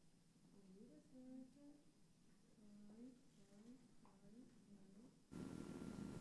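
Near silence with a faint voice humming a few short notes that slide up and down. A little after five seconds in, the background hiss and a steady electrical hum jump up suddenly.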